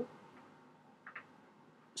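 Near silence, with two faint, quick ticks about a second in: a pestle touching the side of a small glass mortar as reagents are stirred.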